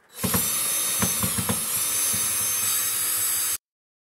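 DeWalt cordless drill/driver running steadily with a high motor whine, backing out one of the screws that hold an over-the-range microwave to its cabinet. There are a few knocks in the first second and a half, and the sound cuts off abruptly about three and a half seconds in.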